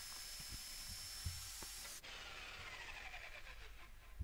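Faint electric jigsaw cutting through a pine board. About halfway the sound changes abruptly, then a whine falls in pitch as the motor winds down.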